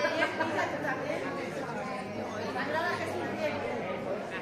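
Indistinct chatter of several people talking among the stalls of a busy fair in a large hall.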